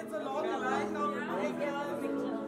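Overlapping chatter of several voices in a large hall, with background music underneath.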